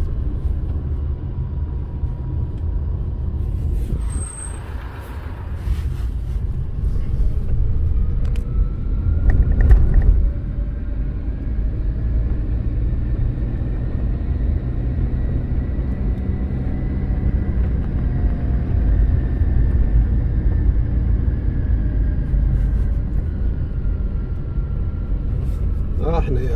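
A car driving, heard from inside the cabin: a steady low rumble of engine and road noise, with a faint tone slowly rising and falling. A few knocks come about ten seconds in.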